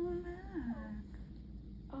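A woman's soft hummed "mmm", held for about half a second and then sliding down in pitch. A short voiced sound starts near the end.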